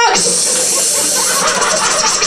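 A loud, hissing vocal noise made into a handheld microphone for about a second and a half, cutting off a sung line: a mouth imitation of a scratched CD skipping in a car's CD changer.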